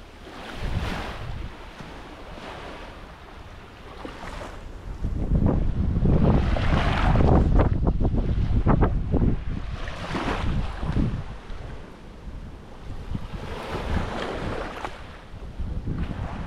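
Small waves washing on a sandy shore, with wind buffeting the microphone in gusts. The wind is loudest from about a third to just past halfway through.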